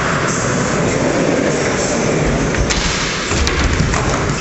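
Skateboard wheels rolling on a concrete skatepark floor, a loud steady rumble, with a couple of sharp clicks in the last second and a half.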